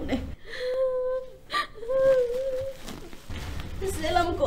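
A woman whimpering and crying in two drawn-out, wavering wails, each about a second long, with a short sharp sob-like sound between them.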